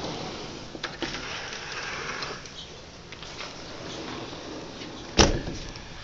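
A sliding patio door rolling along its track for the first couple of seconds, then one sharp thump a little after five seconds in.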